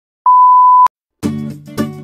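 A television test-card tone: a single loud, steady, high beep lasting about half a second that ends in a sharp click. Strummed guitar music starts just after a second in.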